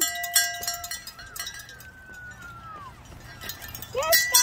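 A metal bell rung with quick strikes for about the first second, its ringing tones holding steady, followed by a faint distant shout.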